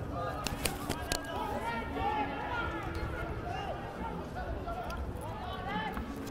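Indistinct talk from people nearby, several voices overlapping, with two sharp knocks about half a second and a second in.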